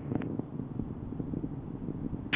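A low, steady rumbling noise with faint hiss above it and a faint short click near the start.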